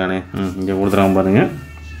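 A man's voice making drawn-out, sing-song vocal sounds with no clear words. The pitch bends and swoops upward about one and a half seconds in, then the voice stops.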